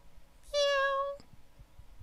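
A single meow held at a steady pitch for under a second, starting about half a second in, with a faint click as it ends.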